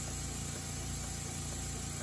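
Small model oscillating-cylinder engine running steadily on compressed air: a fast, even run of exhaust puffs and air hiss as the flywheel spins.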